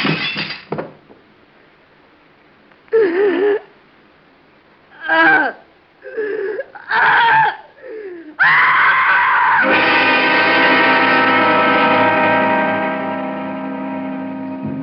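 Radio-drama sound effects and music sting: a few short, wavering vocal cries, then a sudden loud crash of breaking glass about eight and a half seconds in, followed by a long held dramatic music chord that slowly fades.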